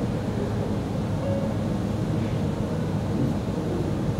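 Steady low rumble and hiss of room ambience, with no distinct events.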